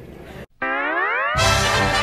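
A cartoon sound effect: a single smooth rising glide in pitch, like a spring's boing, lasting under a second. Lively music starts straight after it.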